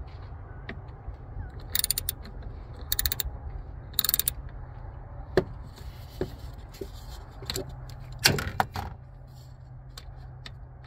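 Ratchet with an 8mm socket on an extension clicking in three short bursts as it backs out the throttle body's screws, then a few sharp metallic taps and knocks of tool handling. The loudest is a cluster of taps a little over eight seconds in, over a low steady hum.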